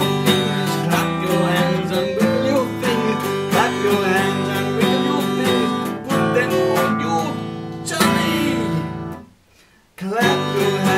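Acoustic guitar strummed in a steady rhythm of chords. It breaks off for about a second near the end.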